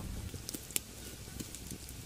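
Quiet crackling and scattered sharp pops from an open wood cooking fire, with rolled tacos frying in oil in a pan over the flames.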